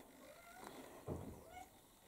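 Near silence: faint room tone of a loft, with one short, faint sound about a second in.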